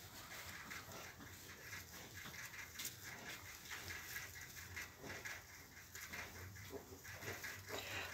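Faint rustling and small scratchy clicks in straw bedding as pot-bellied piglets a few days old crawl about the pen beside the sow.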